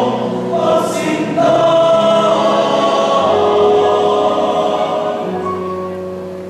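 Male choir singing held chords in parts, the harmony shifting every second or so and growing softer near the end.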